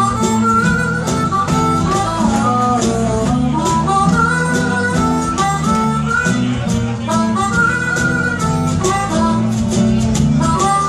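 A live acoustic band playing an instrumental passage: a blues harp harmonica solo, in a stepping melody, over strummed acoustic guitars, bass guitar and a steady cajon beat.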